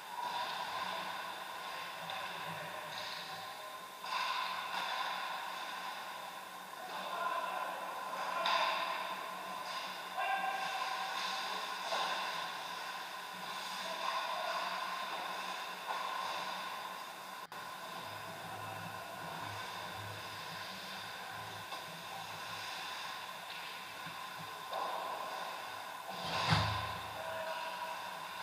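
Ice rink ambience during an ice hockey game: skating and play on the ice over a steady arena hum, rising and falling in swells.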